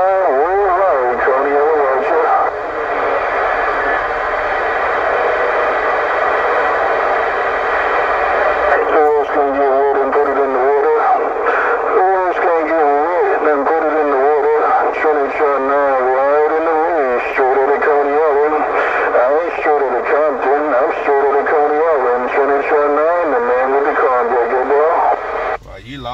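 Another CB station talking over the air, heard through a Cobra 148GTL radio's speaker: a thin, band-limited voice with a warbling quality, too garbled to make out.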